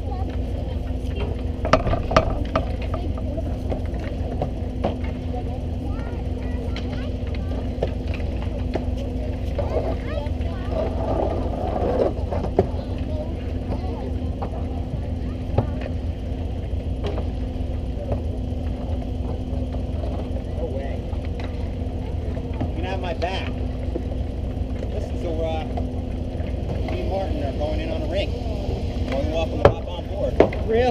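Ice hockey play on an outdoor rink heard close up: scattered sharp knocks of sticks and puck and the scrape of skates, over a steady low hum and rumble. Distant shouting voices come and go, most around the middle and near the end.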